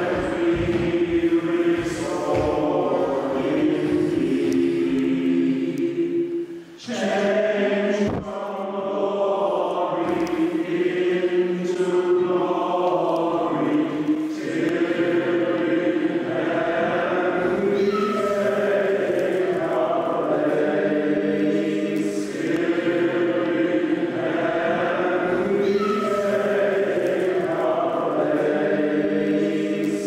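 Choir singing a slow chant in long, held notes, with a brief break about seven seconds in.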